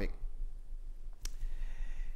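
A pause in a man's talk: a steady low hum, with a single faint click a little over a second in.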